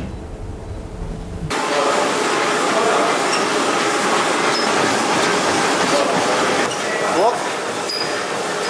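Several treadmills running, a steady mechanical whirring of belts and motors under people walking and jogging, starting abruptly about a second and a half in after a short stretch of low room hum.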